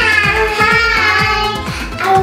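A young girl singing one long, wavering note over background music with a steady beat.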